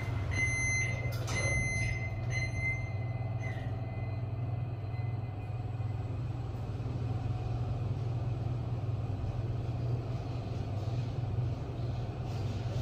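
Hitachi VFI-II MR lift: a high beep repeating about every 0.7 s while the doors close, with a knock as they shut about one and a half seconds in. The beeping stops about three seconds in, leaving the car's steady low hum as it travels down.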